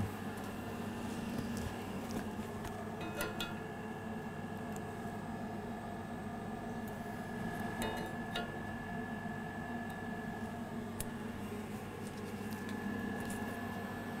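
Steady low machinery hum with a faint high-pitched whine running through it, and a few faint clicks and taps scattered across it.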